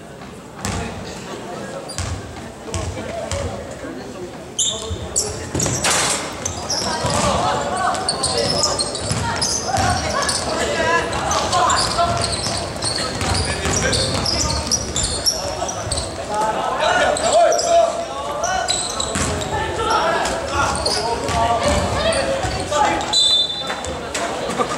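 Basketball being bounced on a hardwood gym floor, echoing in a large hall. At first there are a few sharp bounces, then from about four seconds in players and spectators are shouting and chattering, with short sneaker squeaks as play moves up the court.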